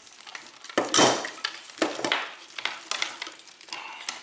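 Ignition-box wiring harness and its crimp terminals handled on a wooden table: a few sharp clinks and clicks of the metal connectors, with the wires rustling between them.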